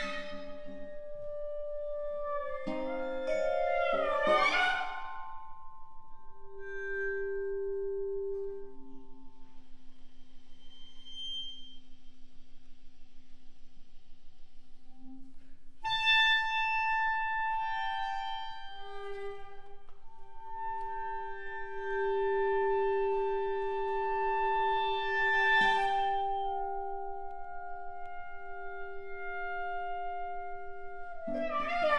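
Contemporary chamber music for clarinet, violin, cello, guitar and mallet percussion: long held notes that overlap and change slowly, broken by sharp attacks near the start, about halfway through and again late on.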